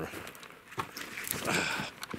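Footsteps and rustling of a person walking through low undergrowth on a forest slope: a few light knocks, then a louder brushing sound about a second and a half in.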